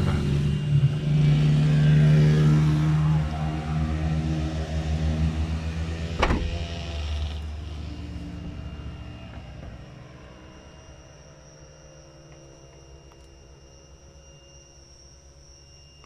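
A motor vehicle passing by with its engine running, loud at first and then fading away over several seconds. There is a single sharp knock about six seconds in. As the engine dies away, a faint steady high insect trill remains.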